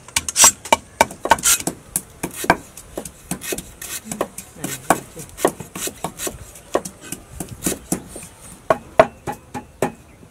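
Wooden pestle pounding in a wooden mortar and a cleaver chopping on a wooden board: a run of sharp, uneven knocks, about one or two a second.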